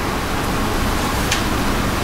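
Steady hiss of room and recording noise, with one faint keyboard key click about halfway through.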